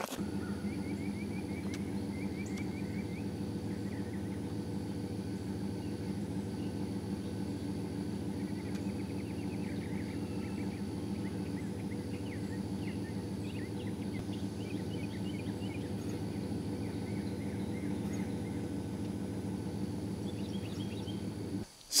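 An engine idling steadily, a low even hum, with birds chirping now and then and a faint steady high insect tone.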